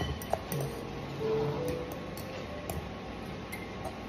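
Fork clinking and scraping against a glass mixing bowl while mashing tinned sardines in oil: light, irregular ticks.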